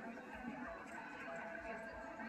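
Faint background chatter: several people talking at a distance, with no single voice standing out.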